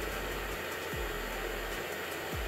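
Handheld propane torch burning with a steady hiss as its flame heats a brass ball.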